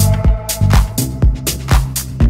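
Tech house music from a DJ mix: a four-on-the-floor kick drum about twice a second, with off-beat hi-hats and a bass line. A held synth chord fades out early in the bar.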